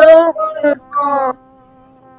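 A voice singing held notes of a melody, stopping about a second and a half in, after which a faint steady hum remains.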